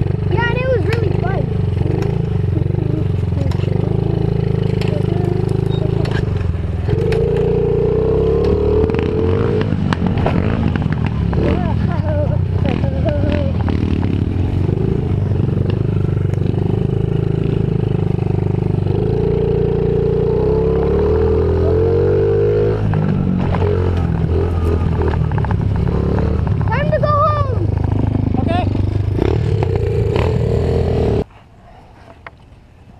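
Honda CRF50F's small single-cylinder four-stroke dirt bike engine running as it is ridden, revs rising and falling, with two stretches of higher revs about a quarter and two thirds of the way through.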